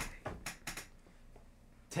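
A quick run of light, sharp clicks and taps in the first second, then quiet room tone.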